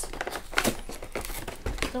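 Crinkling and scraping of a cardboard trading-card collection box being pried open, with a few sharper clicks. Its flap is stuck fast with a sticky glue that the owner suspects means the box was opened and resealed.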